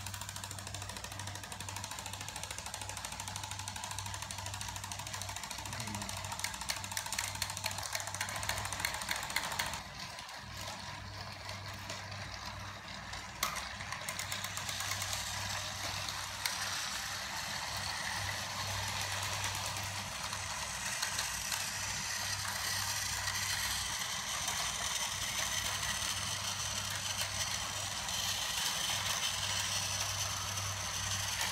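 Several battery-powered Thomas & Friends TrackMaster toy engines running in reverse on plastic track: a steady whir of small geared motors with a ratcheting clatter, and a run of sharp clicks between about 6 and 10 seconds in.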